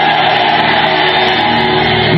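Sustained church background music with a mass of voices together, choir-like, held steady.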